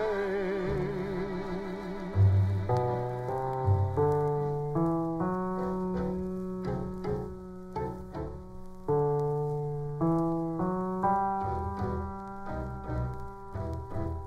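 Instrumental break in a 1950 orchestral pop record: a held sung note with vibrato fades in the first second, then a piano plays a melody in struck notes and chords over soft orchestral backing. The recording is transferred from a 78 rpm disc.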